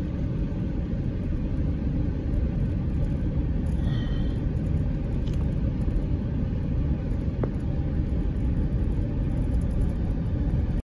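Steady low rumble of a vehicle driving slowly over a dirt road, heard from inside the cab: engine and tyre noise.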